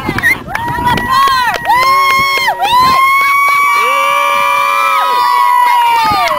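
A group of children shouting together in a drawn-out team cheer: several high voices held on long notes, the longest lasting about three seconds through the second half.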